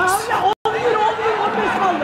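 Many voices from a boxing crowd and ringside shouting and chattering over one another. The sound cuts out completely for an instant about half a second in.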